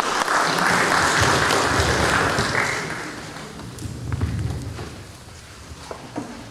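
Audience applauding, the clapping dying away after about three seconds. It is followed by a few low thumps of the microphone being handled.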